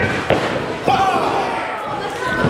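Two sharp impacts from wrestlers in the ring, about half a second apart, with a voice calling out just after the second.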